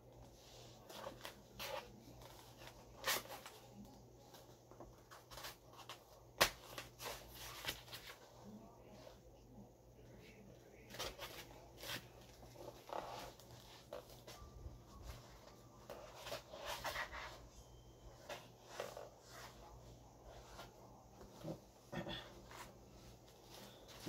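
Scattered light knocks, clicks and rustling from costume armor pieces and prop weapons being handled and posed with, the sharpest knock about six seconds in.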